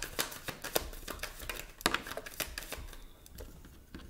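Tarot deck being shuffled by hand: a rapid run of card clicks for about three seconds that thins out near the end as a card is drawn and laid down.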